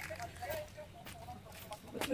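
Faint hen clucking: a run of short calls. There is soft wet handling of raw chicken meat alongside it.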